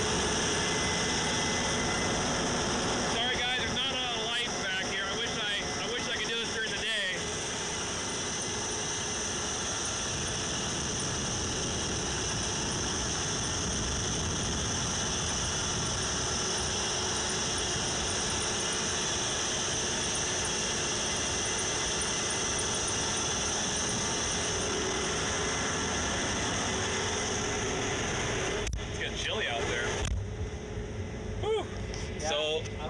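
Case IH 8250 combine running at harvesting speed, heard loud and open with the cab door open: a steady mix of engine, header and threshing noise. Near the end the sound suddenly turns duller and quieter as the door is shut.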